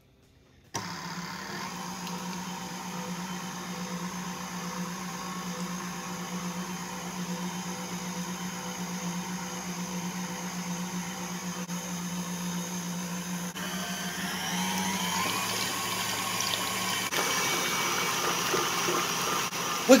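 KitchenAid stand mixer switching on less than a second in and running steadily, its wire whip beating heavy cream in a glass bowl. Past the middle its pitch rises and it grows a little louder as the speed is turned up from low toward high.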